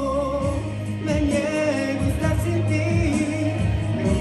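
Young man singing a slow Spanish-language pop ballad into a microphone, his voice wavering on held notes, over instrumental backing music with a steady low bass.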